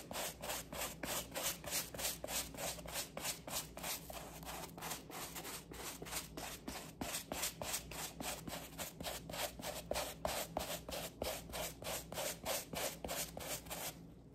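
Suede brush scrubbing back and forth over a suede shoe upper to lift a stain, in quick, even strokes of about four a second. The scrubbing stops suddenly at the end.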